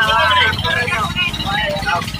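Outrigger boat's engine running steadily under way, a low, evenly pulsing hum, with people's voices over it.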